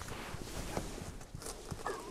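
A cloth curtain being handled and pressed up onto Velcro strips along a car's ceiling: faint rustling with scattered light taps and clicks.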